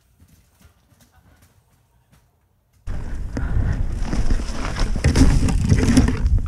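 A quiet trailside stretch with faint ticks, then, about three seconds in, a loud rush and irregular clatter of a Specialized Stumpjumper full-suspension mountain bike riding a rough dirt trail, heard through the rider's action camera.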